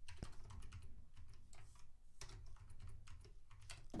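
Faint typing on a computer keyboard: a run of irregular keystrokes.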